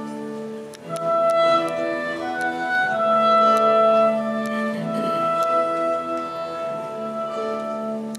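Slow live instrumental music from a folk song-and-dance ensemble: long held notes in a gently moving melody, dipping briefly just before a second in and then growing louder.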